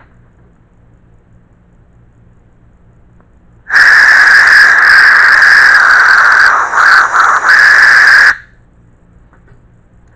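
Compressed air blasting out through the bore of a Rattm 1.8 kW ISO20 ATC spindle from its de-duster air fitting: a loud whistling hiss that starts about four seconds in, runs steadily for about four and a half seconds, flutters briefly near its end and then cuts off.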